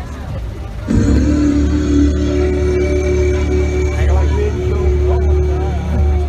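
Carnival float passing close by, playing loud music from its sound system. From about a second in, a long held note sits over a steady low drone, with voices mixed in.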